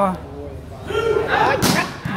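A single sharp smack of a volleyball struck hard by a player's hand, about a second and a half in, over men's voices shouting around the court.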